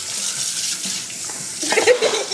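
Water running from a kitchen sink's pull-down spray head, a steady hiss. A brief burst of voice comes near the end.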